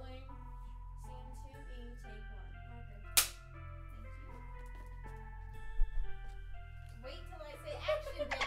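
Background music of sustained notes, cut by one sharp clapperboard snap about three seconds in; a dull thump follows near six seconds.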